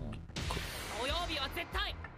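Dubbed-in anime episode audio: a character's voice speaking Japanese over soft background music.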